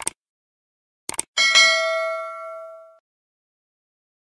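Subscribe-button animation sound effects: a quick mouse click at the start, more clicks about a second in, then a single bright notification-bell ding that rings out and fades over about a second and a half.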